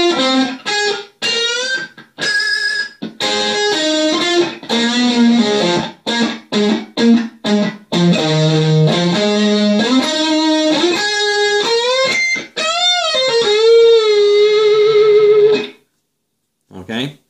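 Gold-top solid-body electric guitar playing a blues-rock solo phrase of single notes with string bends and pull-offs, out of a minor pentatonic box. It ends on a long held note with vibrato that stops just before the end.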